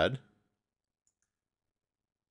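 Two faint, quick computer mouse clicks about a second in, with near silence around them.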